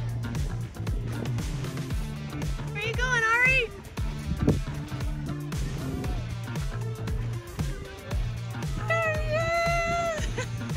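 Background music with a steady beat and bass line, and a singing voice that comes in briefly about three seconds in and again near the end.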